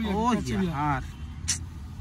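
Mostly a man talking for about the first second, over a steady low background hum. About one and a half seconds in there is a single brief rustle or click as hands handle the jacket.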